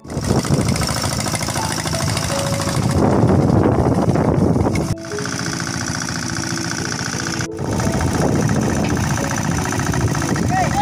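Small farm engine running steadily with a fast knocking beat, broken off briefly twice.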